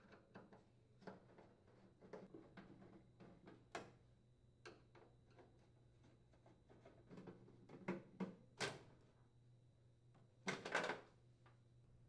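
Faint, scattered clicks and small knocks of a screwdriver unthreading the sheet-metal bottom panel's mounting screws on a microwave oven. There is a louder cluster of knocks near the end.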